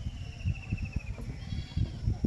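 A goat bleating faintly: one long wavering call that falls slightly in pitch, then a shorter call near the end, over low rumbling noise.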